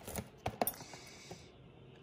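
A few light taps and clicks of a hand with long nails and rings on a cardboard cake box, clustered in the first second or so with one more later.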